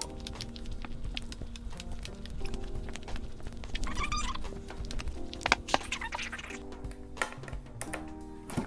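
Background music, with a run of irregular knocks and thuds from a gallon can of paint being tipped and shaken by hand to mix the paint.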